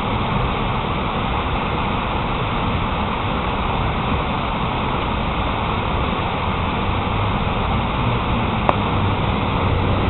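Steady city background din with the low hum of traffic, and one faint click near the end.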